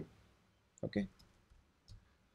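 A few faint computer keyboard keystrokes, scattered clicks as code is typed.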